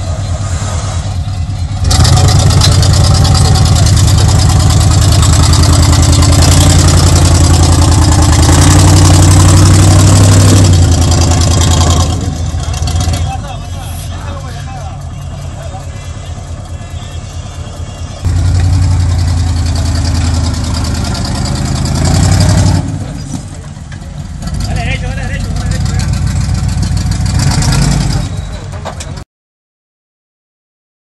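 V8 engine of a rock-crawling Jeep Wrangler revving hard under load as it climbs steep rock. It runs loudest from about two seconds in to about twelve, eases off, then surges again near the middle and settles lower toward the end, where the sound cuts off.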